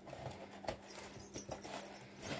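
Large scissors snipping through stiff jute bag fabric: several short, irregular crunching cuts.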